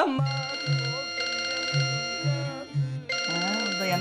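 Telephone ringing: an electronic ring of steady high tones over a low pulsing beat, breaking off briefly about three seconds in. A voice is heard near the end.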